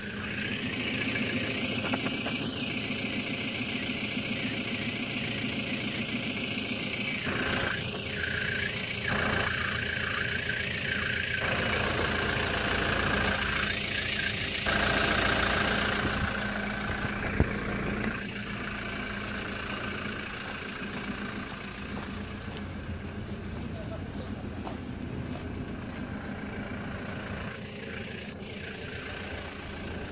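2008 Hyundai Porter II (H100) pickup's diesel engine idling steadily, heard close to the tailpipe, a little fainter after about halfway.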